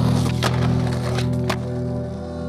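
A skateboard on a concrete kerb ledge: a scraping, rolling noise of wheels and trucks, with two sharp clacks of the board, about half a second in and again about a second and a half in. Background music with held notes plays underneath.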